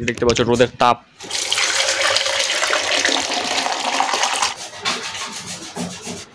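Water running steadily for about three seconds, starting about a second in, followed by a few short scrapes near the end.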